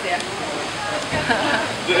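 Indistinct voices over a steady rush of running water.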